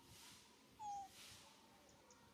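A single short, squeaky animal call, falling slightly in pitch, about a second in, over low background.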